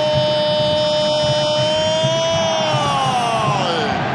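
A football commentator's long drawn-out "¡Gol!" cry for a goal, one high note held for nearly four seconds and then falling away near the end.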